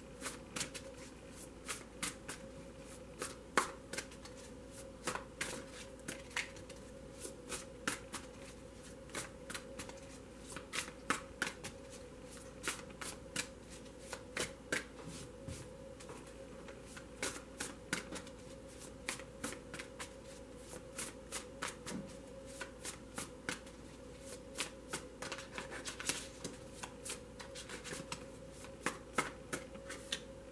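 A tarot deck being shuffled by hand: an irregular, continuous run of soft card snaps and slaps.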